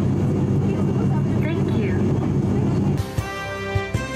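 Cabin drone of an ATR 42-600 twin-turboprop in cruise: a steady low hum with a held propeller tone. It cuts off abruptly about three seconds in, and music starts.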